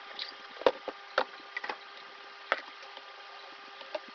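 Crisp snack crunching between the teeth while chewing: irregular sharp crunches, a few louder ones, over a steady low hum.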